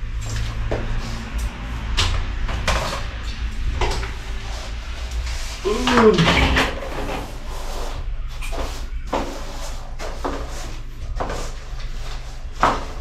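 Broom sweeping a floor: irregular brushing scrapes and light knocks, some against the metal parrot cage, over a steady low hum. A brief voice-like pitched sound comes about halfway through.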